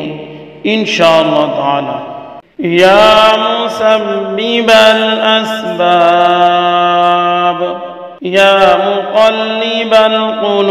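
A man chanting an Arabic supplication in a slow, melodic voice: long drawn-out phrases with notes held for seconds, a brief breath pause about two and a half seconds in, and another just after eight seconds.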